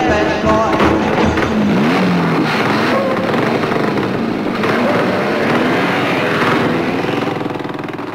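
Several motorcycle engines revving and running, with rising and falling pitch, fading out near the end.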